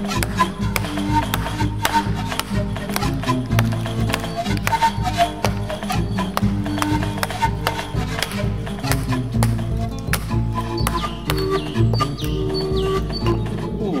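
Background music with sustained notes, over a run of sharp wooden knocks: a wooden baton striking the spine of a Fällkniven A1 Pro knife to split a block of hard oak.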